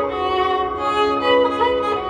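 Carnatic violin playing a solo melodic line full of sliding, bending ornaments (gamakas), over the steady drone of an electronic tanpura.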